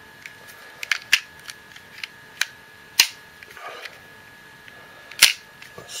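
Sharp clicks and snaps of hard plastic parts of a M.A.S.K. Buzzard toy being clipped into place by hand, a handful of separate clicks, the loudest about five seconds in.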